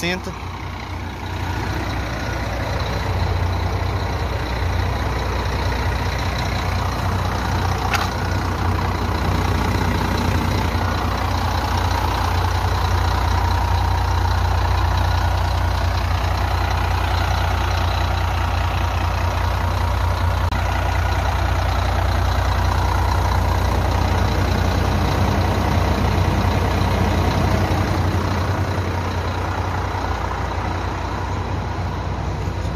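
Scania K420 coach's rear-mounted six-cylinder diesel engine idling, a steady low drone that grows louder a second or two in and then holds even. A single sharp click sounds about eight seconds in.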